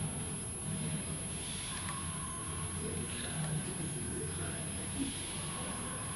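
Steady low rumble of a restaurant dining room's background noise, with faint voices in the distance.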